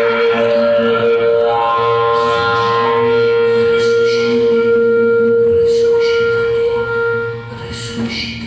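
Live jazz music: a single long held note sustains for about seven seconds, with further sustained notes coming in above it about a second and a half in, then the music drops quieter near the end.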